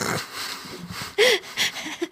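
Breathy laughter from two people, a short sharper laugh a little over a second in.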